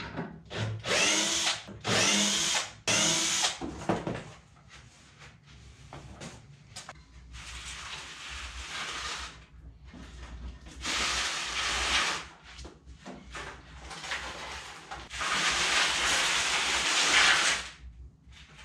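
Cordless drill-driver running in several short bursts, its pitch rising as it spins, as screws holding the wooden frame are backed out. Later come three longer stretches of scraping, hissing noise of about two seconds each.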